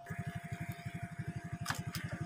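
Small motorbike engine running at low revs with an even putter of about eighteen beats a second, with one brief sharp click near the end.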